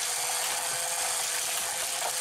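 Hot Wheels Power Tower wall track's electric motor whirring steadily as it drives die-cast cars around, with a constant mechanical rattle of the tower mechanism and plastic track.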